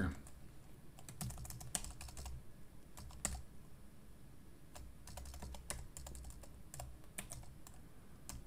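Computer keyboard typing: faint, irregular keystrokes in short flurries with brief pauses, as code is edited.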